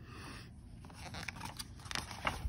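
Paper of a picture book's pages rustling and scraping as the page is handled, in a run of short soft rustles that gather toward the end.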